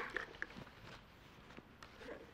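Faint handling sounds from a steam iron and fabric: a few light taps and rustles as the iron is lifted from the pressed seam and stood upright on its heel.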